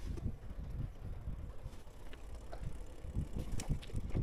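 Bicycle rolling over concrete paving blocks: a low tyre rumble with irregular bumps, heavier near the end, and a few light clicks, with some wind on the microphone.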